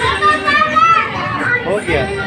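Several children's voices overlapping, chattering and calling out as they play.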